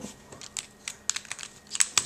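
A plastic 3x3 speedcube being turned by hand: a string of light, irregular clicks as its layers snap round.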